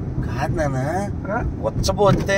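Speech inside a moving car's cabin, over the steady low rumble of the engine and road noise.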